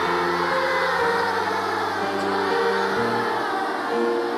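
Large children's choir singing in many voices, accompanied by piano, with the low accompanying notes changing about once a second.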